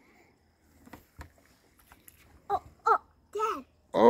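A child's voice: three short, high calls in the second half, after a quiet stretch with a few faint clicks.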